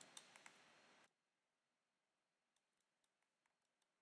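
Near silence: room tone, with a few faint clicks of a computer mouse in the first half second.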